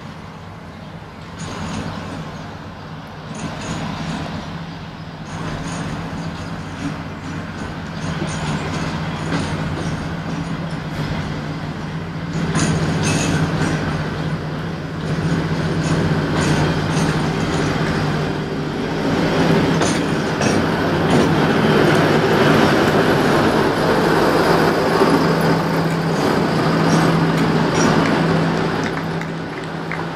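Diesel locomotive hauling coaches approaches and passes. Its engine's steady drone grows louder over about twenty seconds and falls back near the end, with clicks from the wheels on the track.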